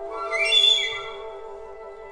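Flute ensemble of piccolos, flutes, alto and bass flutes holding layered, sustained tones. About half a second in, a loud, shrill, breathy high note flares up and fades within about half a second.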